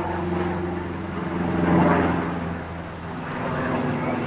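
Small light aircraft flying overhead, its engine drone swelling to a peak about two seconds in and then fading.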